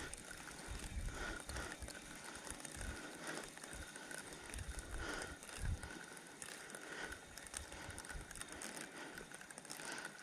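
Spinning reel being wound slowly while playing a hooked crucian carp: a faint, steady mechanical whirr with small clicks from the reel's gears.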